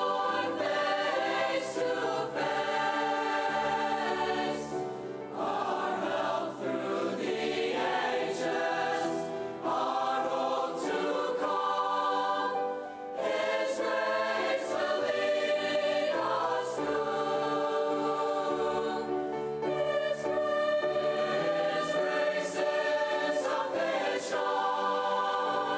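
Mixed choir of young voices singing in long held phrases with Yamaha grand piano accompaniment, with a few short breaks between phrases.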